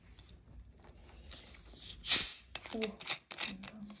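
Soft voice sounds and small handling noises at a table, with one short, loud hiss about halfway through.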